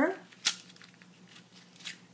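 A single sharp click about half a second in, then a brief scratchy rustle near the end: craft wire being handled.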